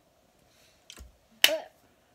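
A soft low knock about halfway through, then a single sharp hand clap, the loudest sound.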